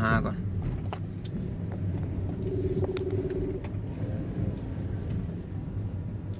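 Steady low rumble of a Toyota Vios running, heard from inside the cabin, with a few faint clicks and a brief faint hum about halfway through.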